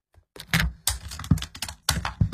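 A quick, irregular run of sharp clicks and soft thuds, handling noise close to the microphone, starting about half a second in.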